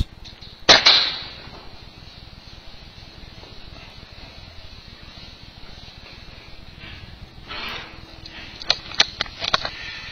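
A single air rifle shot, a sharp crack with a short decay, about a second in. Near the end a brief rustle and several sharp clicks follow.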